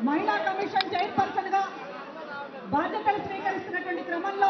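A woman speaking into a handheld microphone.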